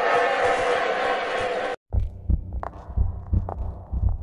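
Heavily effect-processed cartoon soundtrack. A loud, dense crowd-like shouting noise runs until it cuts off abruptly a little before two seconds in. After a brief gap comes low, bass-heavy thumping with sharp clicks.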